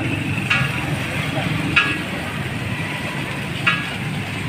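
A paper shawarma wrapper crinkles in three short bursts as it is folded around the roll. Behind it runs a steady low hum of street traffic and stall noise.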